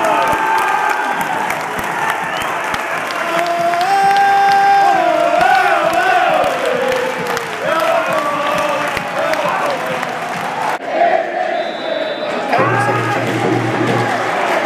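Football stadium crowd cheering and applauding as the teams walk out, with music over it. The sound breaks off abruptly about eleven seconds in and again shortly after.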